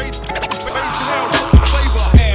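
Old-school boom bap hip hop instrumental: a piano loop over deep bass and a heavy kick drum. The bass and drums drop back through the middle, and the kick and bass come back in about three-quarters of the way in.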